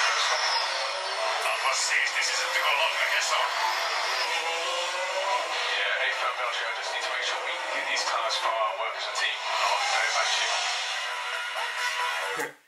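Formula 1 team radio playing back: an engineer's and a driver's voices over the car's radio link, thin with no bass, with the onboard engine running underneath.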